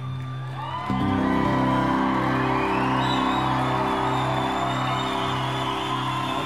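Live band ending a song on a long held chord that comes in about a second in, with the audience cheering and whooping over it.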